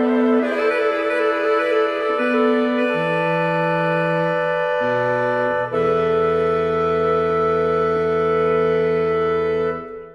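Saxophone quartet playing sustained chords that shift every second or two, ending on a long held final chord that cuts off just before the end.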